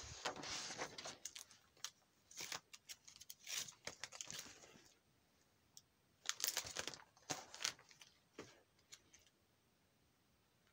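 Plastic card-sleeve pages in a ring binder crinkling and rustling as they are handled and turned, in several short bursts with brief quiet gaps between.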